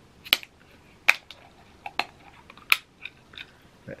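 Plastic screw cap of a Prime Lemon Lime drink bottle being twisted open: the seal cracks in four sharp clicks spread over about three seconds, with a few fainter ticks between them.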